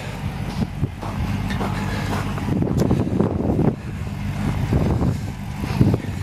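Gen III Hemi V8 in a 1928 Dodge rat rod, idling steadily while it warms up.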